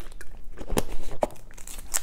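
Thin plastic water bottle crinkling and crackling in the hand as someone drinks from it and lowers it, with several sharp crackles spread through the moment.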